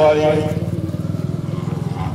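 A man's voice through a public-address system, drawing out one word that ends about half a second in. Under it, a steady low pulsing engine drone.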